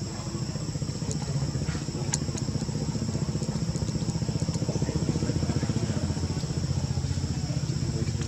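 A steady, high insect drone over a low, fast-pulsing motor rumble, with a few faint clicks in the first couple of seconds.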